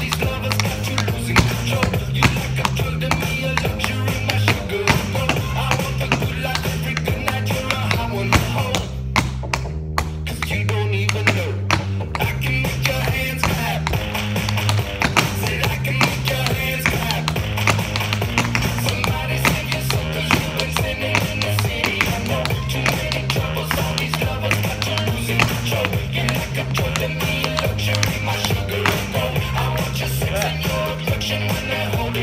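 Metal taps on tap shoes striking a portable wooden tap board, dancing the Uganda Shim Sham routine at a slow tempo, the clicks of shuffles, touches and steps falling in time over recorded music with a steady repeating bass line.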